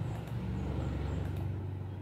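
A low, steady rumble that eases off toward the end, with a few faint clicks of a computer mouse as points are placed on a curve.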